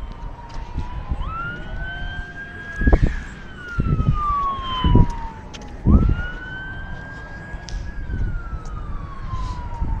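An emergency-vehicle siren wailing: its pitch rises quickly, holds, then slides slowly down, twice over. Several dull thumps from the phone being handled near the middle are the loudest sounds.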